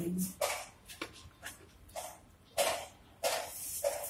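Hands rolling a ball of stiff dough between the palms and pressing it flat: about half a dozen soft, short brushing strokes with quiet gaps between them.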